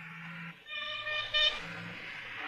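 A vehicle horn sounds twice: a longer toot starting just over half a second in, then a short, louder one.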